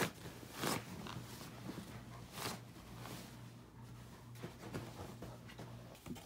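Soft rustling and handling noises, with a couple of louder rustles about a second and two and a half seconds in, over a faint low hum.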